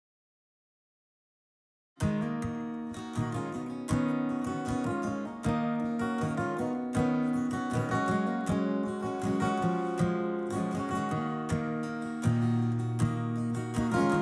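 Dead silence for about two seconds, then a flat-top acoustic guitar starts strumming chords in a steady rhythm, the intro to a song, getting a little louder near the end.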